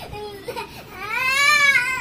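A boy's drawn-out, high-pitched whining squeal that rises and falls, starting about a second in. It comes while he is held in a play-wrestle, after a shorter, lower vocal sound.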